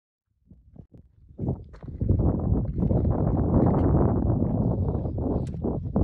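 Wind rumbling on the microphone, mixed with footsteps scuffing and clicking on loose rock; it starts faint and grows loud about two seconds in.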